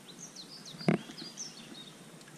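Small bird chirping in quick high notes that slide up and down, over faint outdoor background. One sharp click about a second in, from handling the rod and reel.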